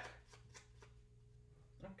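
Faint, light clicking of game cards being shuffled by hand: a discard pile being shuffled to form a new draw deck.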